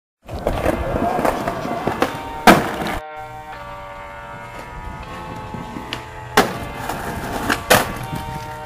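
Skateboard sound on concrete with a loud sharp crack of the board about two and a half seconds in; at about three seconds this cuts to a music track of steady sustained chords, with two more sharp cracks of the board near the end.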